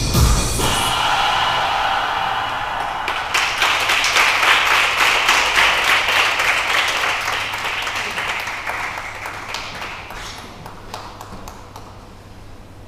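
Electronic dance music with a beat stops just after the start, and an audience applauds. The clapping swells about three seconds in and dies away near the end.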